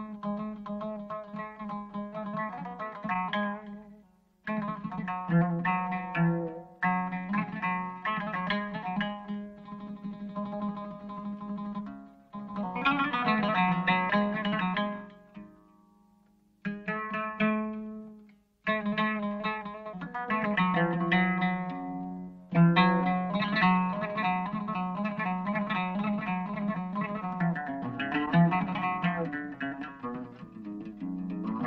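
Persian classical music: a solo string instrument plays melodic phrases in the Shushtari mode, each note struck or plucked and left to ring. The phrases are broken by brief pauses about 4, 12, 16 and 18 seconds in.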